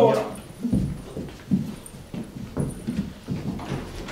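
Footsteps on a wooden stage floor: several people walking off in an uneven run of thuds, about two a second.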